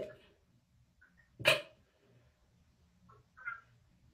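Mostly quiet room, broken by one short, sharp vocal sound about a second and a half in, and a faint brief sound near the end.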